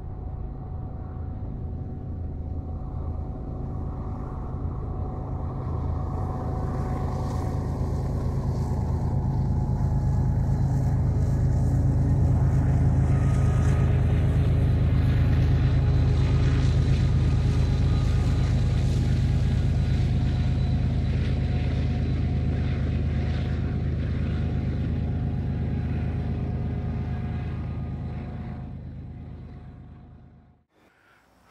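A freight train's diesel locomotives running with a deep, steady engine drone that builds to its loudest around the middle while a hiss of the passing train rises above it, then fades out near the end.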